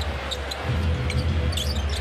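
Live basketball game court sound in a large arena: a ball dribbled on the hardwood floor and short sneaker squeaks, over a steady low arena rumble.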